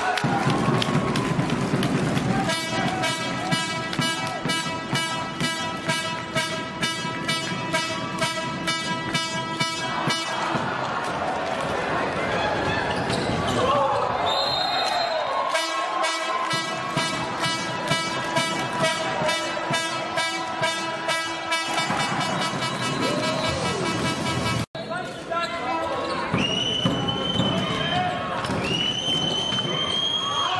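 Handball arena crowd noise with a fan's horn sounding two long steady blasts, the first a few seconds in and the second in the middle, over rhythmic beats of about three a second from drumming or clapping in the stands. A ball bounces on the court beneath the crowd voices.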